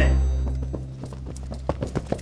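Music dying away, then quick running footsteps, a fast run of knocks about three or four a second that grows denser near the end.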